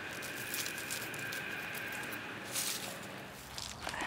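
Bare hands pressing and patting potting soil and dry leaves down into a plant pot: soft rustling and crackling with a few small clicks.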